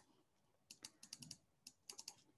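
Faint computer keyboard typing: a quick scatter of about ten light key clicks, starting under a second in.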